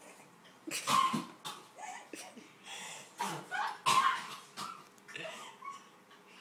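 Coughing and gagging on a mouthful of dry ground cinnamon: irregular harsh coughs and choking breaths in several clusters.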